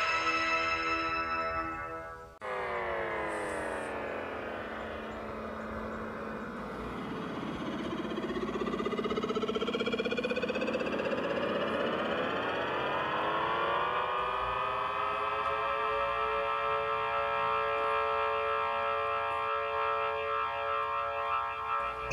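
Music cuts off about two seconds in. A synthesized sound effect follows: many tones slide down together, then rise and spread apart into a loud sustained chord that is held from about halfway through to the end.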